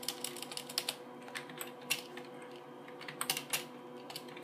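Computer keyboard being typed on: irregular clusters of key clicks with short pauses between them, over a faint steady hum.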